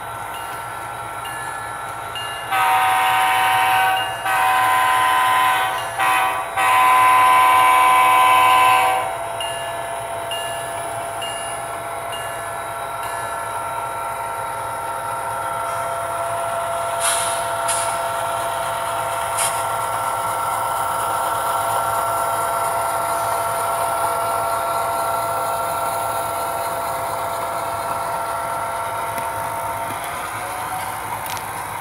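Model diesel locomotive's sound system: the bell dinging about twice a second, then the horn sounding a long, long, short, long crossing signal, then the engine sound running steadily, with a few sharp clicks about midway.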